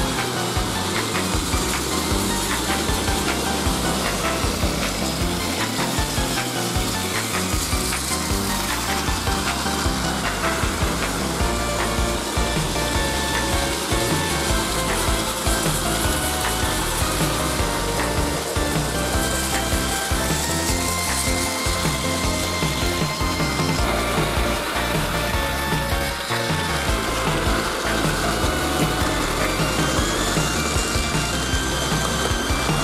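Several Plarail battery toy trains running on blue plastic track, a steady whirring of small gear motors with wheels rattling and rubbing along the track, under background music.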